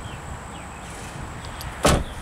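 Rear passenger door of a 2012 Ford Escape being shut: one short, solid thump near the end, over a steady low background rumble.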